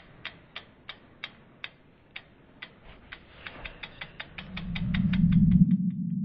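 Sound effects for an animated logo: a run of sharp ticks that speeds up from about three a second to about six a second, with a low swell rising beneath them near the end.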